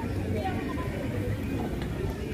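Background voices of people talking, over a low steady rumble.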